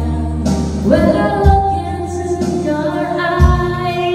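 A woman singing karaoke into a microphone over a music backing track with sustained bass notes.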